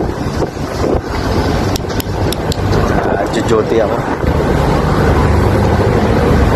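Steady drone of ship's machinery on deck, with wind on the microphone and a few sharp clicks about two seconds in.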